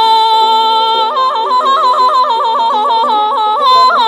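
A woman singing Persian classical avaz in Bayat-e Esfahan with no words. A held high note breaks about a second in into a run of rapid, regular pitch breaks, the tahrir ornament, then settles on a held note again near the end.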